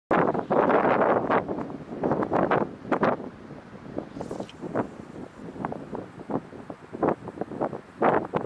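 Gusty wind buffeting the microphone in uneven rushes, loudest in the first three seconds and dropping back after.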